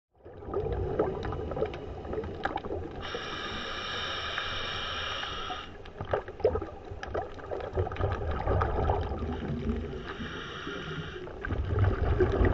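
Underwater sound picked up by a camera on the seabed: a steady low rumble with scattered sharp crackling clicks. Twice, about three seconds in and again near the end, a steady high hiss with a whistling tone comes in for a second or two and stops.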